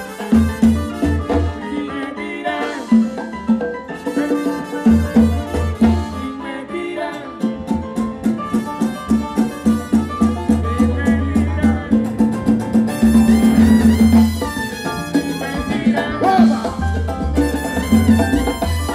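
Salsa music from a live band, instrumental with no singing, carried by a steady rhythmic bass line and percussion.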